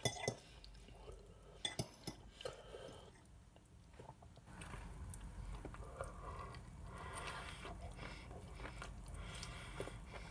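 A metal fork clinks against a plate a few times in the first two seconds, then chewing follows.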